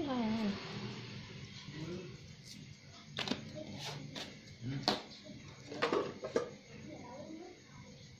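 Kitchen items being handled on a tiled counter: a salt shaker shaken over the bowl, then a few sharp clicks and knocks as things are set down and a kitchen knife is picked up, with faint voices in the background.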